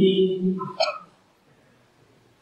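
A man's voice over a microphone finishing a phrase in the first half second or so, with a brief sharp sound just before a second in, then a pause of near silence with faint room tone.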